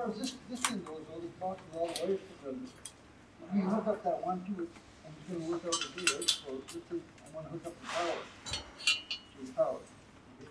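Irregular light metal clinks and taps from bolts, washers and a hex key knocking against a metal bike rack as bolts are threaded in and the rack is lined up.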